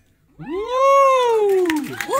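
After a brief hush, a person's long drawn-out vocal cry like a whoop, rising and then falling in pitch over about a second and a half.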